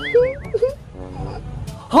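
A warbling, wavering tone lasting well under a second, like a cartoon dream-wobble sound effect, marking the end of a dream. Quieter background music follows.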